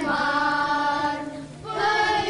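A group of children singing together, holding long notes, with a short break for breath a little past the middle.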